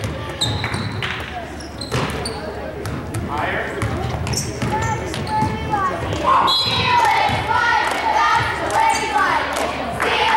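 Basketball dribbling on a hardwood gym floor, with the talk and shouts of spectators and players echoing in the gymnasium. The shouting grows louder from about six seconds in.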